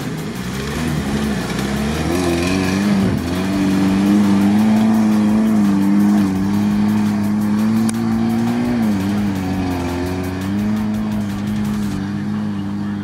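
Lada Niva's engine held at high revs as the car pushes through a boggy mud stretch. The revs climb a couple of seconds in, hold steady, dip near the end and pick up again.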